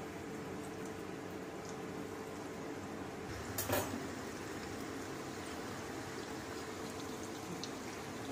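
Breaded chicken balls deep-frying in hot oil, a steady bubbling hiss. A single short knock comes about three and a half seconds in.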